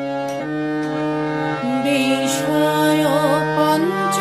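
Harmonium playing a slow melody over a held low drone, its reeds sounding steady tones. From about one and a half seconds in, a woman sings the tune along with it, with wavering ornaments on the notes.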